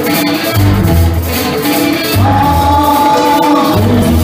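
A rock band playing live and loud, with a pulsing low bass and percussion, the music cutting in abruptly just before the start.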